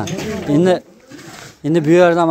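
Men's voices: a short spoken exclamation at the start, another brief utterance, then talk resuming near the end.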